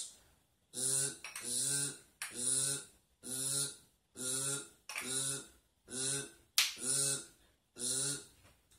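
A young man's voice repeating one wordless, breathy syllable about nine times in an even rhythm, roughly one every second.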